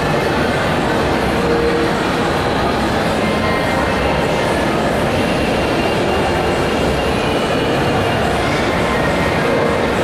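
Steady, loud din of a large indoor crowd, many voices blurred into one even noise, with a few faint held tones drifting through.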